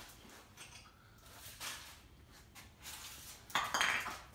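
Quiet workshop room tone with faint shuffling, then a short clatter of knocks and clinks near the end, as of hard objects bumped together.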